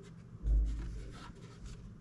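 Handling noise as a modular ATX power supply's metal casing is turned over in the hands: a dull low bump about half a second in, then fingers rubbing and scraping on the casing.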